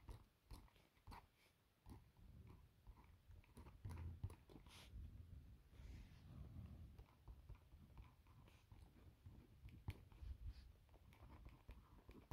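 Near silence: faint scratching of a pen writing on a lined notebook page, with scattered soft clicks and light handling bumps against the phone.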